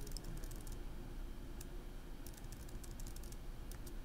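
Typing on a computer keyboard: short, light bursts of keystrokes with brief pauses between them.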